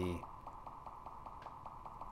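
Faint steady hum with a rapid, even ticking from an intraoral scanner running as its wand scans a denture.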